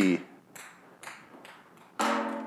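Ping-pong ball bouncing on a tile floor: a few light ticks, about half a second apart.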